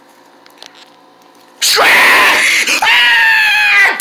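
A person's voice screaming in fright, starting suddenly about one and a half seconds in after a quiet stretch with a few faint clicks. It begins harsh, then settles into a held cry that sinks slightly in pitch and cuts off just before the end.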